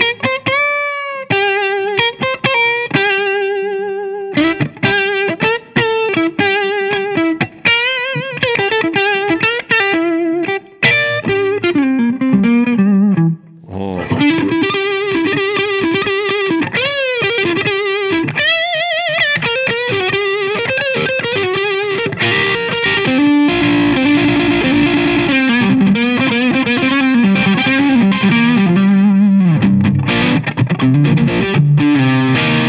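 Gibson Memphis ES-Les Paul semi-hollow electric guitar with PAF-style pickups, played through a distorted amp: single-note lead lines with string bends and vibrato. There is a brief pause about thirteen seconds in, then denser, sustained playing in the last third.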